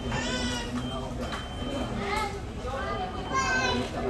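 Restaurant background murmur with a child's high-pitched voice calling out twice, once just after the start and again about three seconds in.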